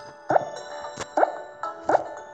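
Light background music from a children's storybook app, with three short rising pop sound effects under a second apart as animal pictures appear on the screen.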